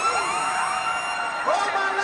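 A siren-style sound effect through the arena PA in a hip-hop set: a rising sweep that levels off into a held, many-toned wail, fading after about a second and a half as voices over the music return.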